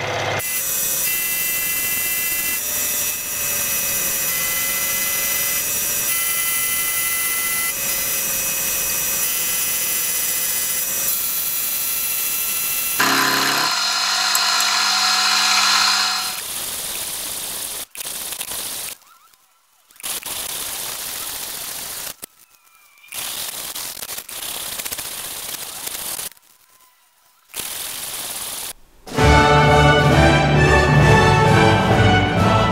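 Milling machine spindle running a chamfer cutter along the edges of a metal block: a steady cutting hiss with a few high whining tones. After about 13 s the sound changes and breaks into short stretches with silent gaps between them, and music starts just before the end.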